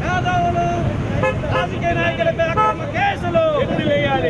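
Street traffic with several vehicle horns sounding in short held blasts, over the mixed voices of a crowd of protesters.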